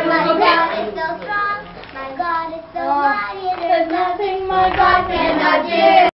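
A group of children singing a song together, with a short dip between lines about two and a half seconds in.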